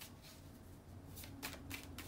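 Tarot deck being shuffled by hand, faint: a quiet first second, then a run of short card clicks.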